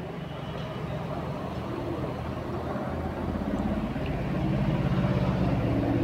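A low, steady engine hum that slowly grows louder, like a motor vehicle running and drawing nearer.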